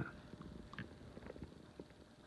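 Faint low rumble of a Hampton Bay Huntington 52-inch ceiling fan running at its low speed setting, with scattered faint ticks.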